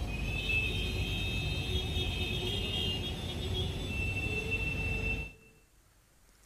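Road traffic rumble with a sustained high-pitched whine over it, cutting off suddenly about five seconds in.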